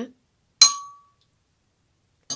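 A spoon clinking once against a glass measuring jug of dye solution, with a short bright ring that dies away within about half a second.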